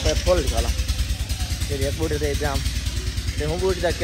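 A man talking in short phrases over a steady low rumble.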